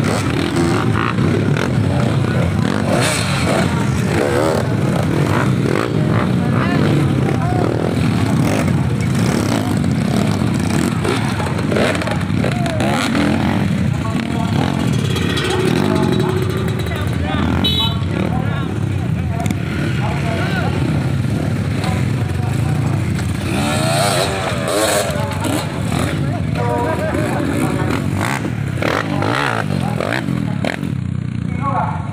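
Several dirt bike engines idling and revving as the bikes pull away one after another, with people's voices mixed in.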